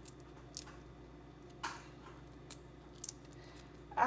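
Whole raw shrimp being peeled by hand, the shells cracking and squishing as they pull away: a few short, faint crackles spread through, over a faint steady hum.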